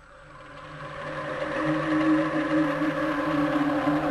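A steady hum of several held tones that swells up over the first two seconds and then holds level.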